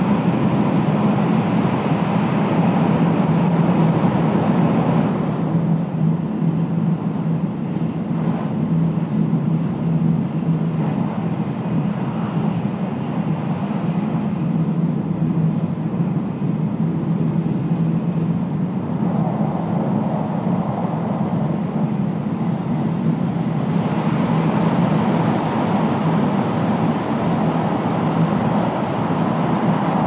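Running noise of an N700A Shinkansen heard inside a passenger car: a steady rumble with a low hum. Its hiss is brighter at first, turns duller about five seconds in, and brightens again over the last several seconds.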